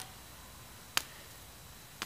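A single sharp crack about a second in: a hammer blow striking the snowman's stick arm.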